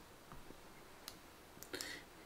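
A few faint, sparse computer mouse clicks in a quiet room, as red underlines are drawn onto an on-screen slide.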